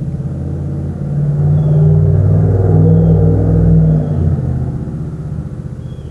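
An engine running outside, a low rumble with a steady pitch. It grows louder about a second in, holds for a few seconds, then fades.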